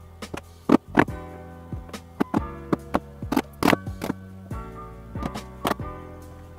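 Background music with plucked guitar, over which a wood chisel chops and pares into plywood in a series of irregularly spaced sharp knocks.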